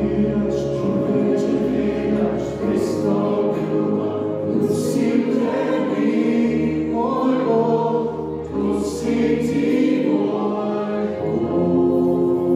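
Live worship band playing a slow song: acoustic guitars and keyboard holding chords that change every couple of seconds, with several voices singing together.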